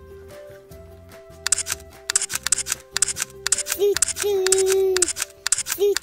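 Background music. From about a second and a half in, a voice imitates a steam train: a fast hissing 'chugga-chugga' rhythm, then two 'choo-choo' calls, each a short note followed by a long one.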